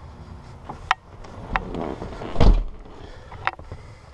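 Handling noise as a person climbs into an SUV's driver's seat: a few sharp clicks, rustling and, about halfway through, a dull thump, the loudest sound.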